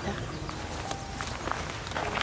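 Footsteps on dry dirt ground: a few light scuffs over steady outdoor background noise.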